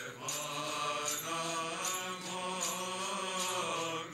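Orthodox monks chanting Byzantine-style liturgical chant, male voices holding long, steady notes.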